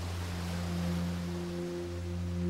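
A low, steady droning tone held without a break, over the wash of surf breaking on rocks.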